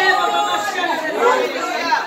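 Speech: several voices talking over one another in a large hall.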